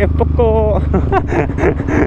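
Single-cylinder four-stroke engine of a 2017 KTM Duke 125 with an aftermarket Akrapovic exhaust, running at low road speed and easing off about a second in as the bike slows. A voice talks over it.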